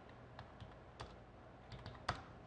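Faint computer keyboard keystrokes: a handful of scattered key presses, the loudest about a second in and a quick few near the end.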